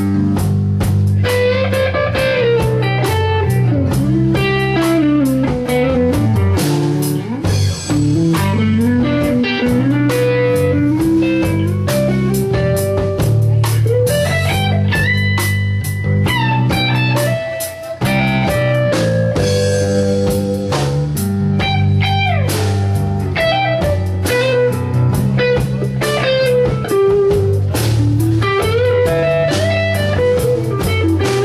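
Live blues-rock band playing a passage without vocals: a lead electric guitar with bending, sliding notes over bass guitar and a drum kit. The band drops out for a moment about two-thirds of the way through, then comes straight back in.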